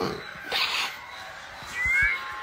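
Kissing sounds: a short breathy smack about half a second in, then a brief, high, rising squeak of lips near the end.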